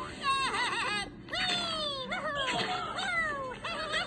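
High-pitched cartoon gibberish from a Ninjalino: quick warbling squeaks followed by several long falling whines, with no real words, heard through a TV speaker.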